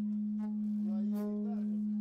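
A steady, low, pure tone held unchanging throughout, with a faint voice over it for about a second midway.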